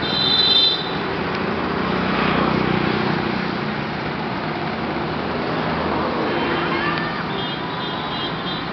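Road traffic on a busy city street: a steady wash of passing cars and motorbikes, with brief high-pitched tones near the start and again near the end.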